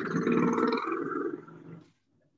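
A loud, animal-like vocal sound lasting nearly two seconds, coming through a participant's unmuted microphone, then cutting off.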